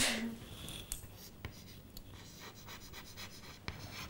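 Chalk writing on a blackboard: faint scratching strokes broken by several sharp taps as the chalk meets the board.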